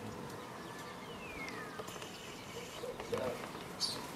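Garden ambience: a faint bird whistle falling in pitch about a second in, then low, short cooing calls near the end, with a sharp click just before the end.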